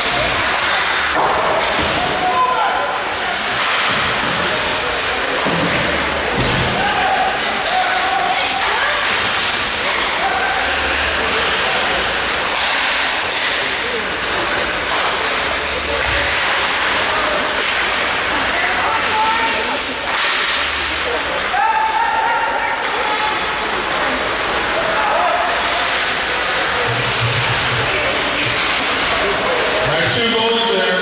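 Ice hockey rink sound during play: sharp sticks and puck hitting now and then, with thuds against the boards, over a steady hubbub of spectators' voices and calls.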